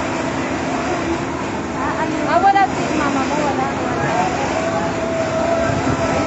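Voices shouting over a steady engine-like rumble, with the loudest shout about two and a half seconds in.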